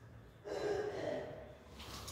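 A person's breathy vocal sound starting about half a second in and lasting about a second, with a short hiss near the end.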